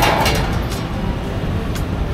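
Steady low rumble of street traffic, with a few faint light clicks.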